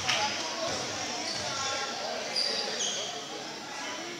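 Indoor basketball game in a gymnasium: a basketball bounces on the hardwood court, loudest right at the start, with a few short high sneaker squeaks in the middle, over a background of crowd chatter echoing in the hall.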